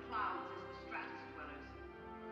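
Live orchestra holding sustained chords while a voice speaks dialogue from the film over the music, with brief inflected voice sounds about a quarter second in and again about a second in.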